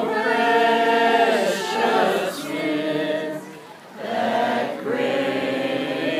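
A crowd singing together in a group, in long held phrases, with a short break a little before four seconds in.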